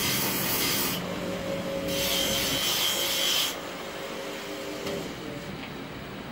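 Electric bench grinder running with a steady hum while a steel butcher's knife is ground against the wheel in two passes, each a loud harsh hiss: the first ends about a second in, the second runs from about two to three and a half seconds in. The motor's hum dies away about five seconds in.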